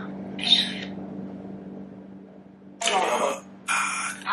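Necrophonic ghost-box app playing through a phone speaker: short bursts of garbled, static-like sound, one about half a second in and two more near the end, over a steady low hum.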